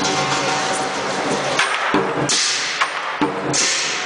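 Lion dance percussion: a Chinese lion drum with clashing cymbals and gong. A dense ringing roll fills the first half, then it breaks into separate drum beats and cymbal crashes about once a second.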